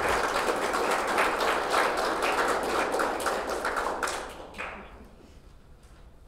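Audience applauding, a dense patter of many hands clapping that fades away about four and a half seconds in.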